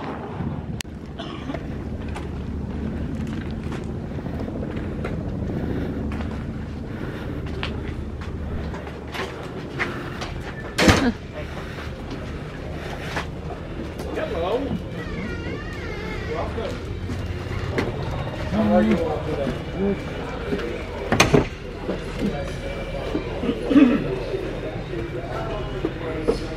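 Indistinct voices of people nearby, over a low rumble of wind on the microphone at first. Two sharp knocks come about eleven seconds in and again near twenty-one seconds.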